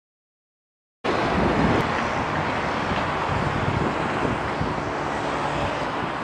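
Silence for about a second, then steady road traffic noise from passing cars, with wind rumbling on the microphone.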